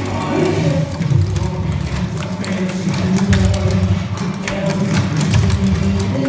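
Clogging shoe taps striking a wooden stage floor in quick, uneven runs of sharp clicks, over loud recorded pop music.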